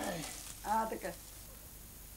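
Dry straw rustling and crackling briefly as a bundle of it is handled, with a short snatch of a voice; then only low room noise.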